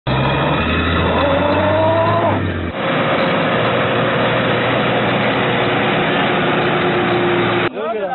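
Vehicle engine revving as it strains in deep mud, its pitch rising for about a second before a sudden cut. Then another engine runs on at a steady, slowly falling pitch under a loud rushing noise, ending abruptly.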